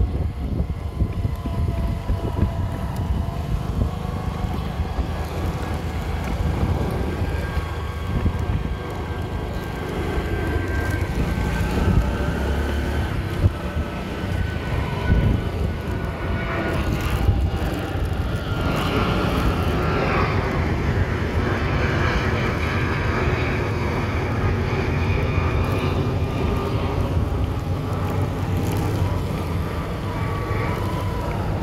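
Engine of a slow-moving vehicle running steadily, its pitch drifting slowly up and down, with heavy wind rumble on the microphone.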